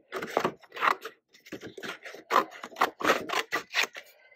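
Scissors snipping through a sheet of printed kraft paper in a quick, uneven run of cuts, about three to four a second.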